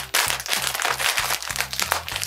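Small plastic snack packet crinkling as it is pulled open, a dense run of rapid crackles, over background music.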